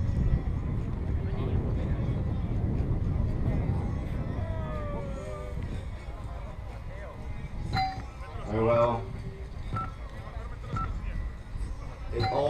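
Wind rumbling on the microphone, strongest in the first half and then easing off. A faint whine falls in pitch around the middle, and a person's voice speaks briefly about three-quarters of the way through.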